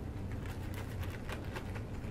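Ziploc plastic bag of freshly mixed glue-and-liquid-starch slime being squeezed and kneaded in the fingers, giving a string of short crinkles and clicks, over a steady low room hum.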